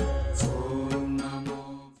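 Devotional mantra chant set to music: sustained sung tones over a low drone, with regular percussion strikes, fading out over the last half second.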